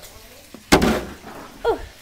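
A single loud thump, a hard object knocking down onto a hard surface, under a second in, fading quickly.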